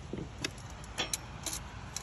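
A handful of light, sharp metallic clicks and taps, about five in two seconds, from a steel tape measure being handled against the end of a log, over a low steady hum.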